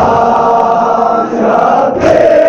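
A group of men chanting a noha, a Shia mourning lament, together. The chanting is marked by a sharp slap of hands beating on chests (matam) at the start and end, about two seconds apart.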